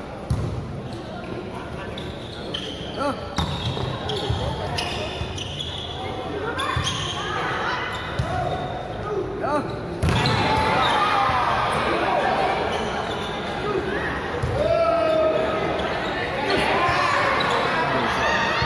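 Volleyball struck during a rally in a large, echoing sports hall, with players calling and spectators shouting. About ten seconds in, a hard hit at the net is followed by louder, sustained crowd noise.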